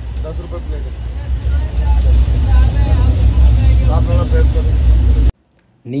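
Loud low rumble inside a crowded train sleeper coach, with passengers' voices in the background; it cuts off abruptly near the end.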